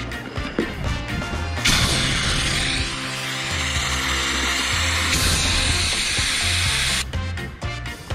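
Air hissing out of the Body Glove Crusader inflatable paddleboard's opened valve as the board is deflated, a loud steady rush that starts about two seconds in and cuts off sharply near the end, over background music.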